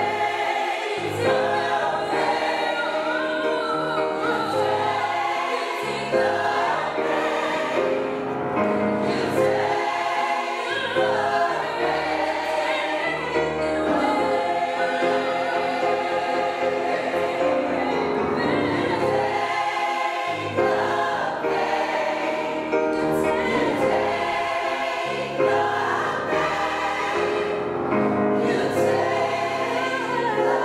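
Gospel choir singing together with piano accompaniment, many women's and men's voices in full harmony.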